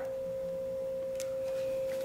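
A steady, unchanging mid-pitched pure tone, like a tuning fork, with a faint tick or two.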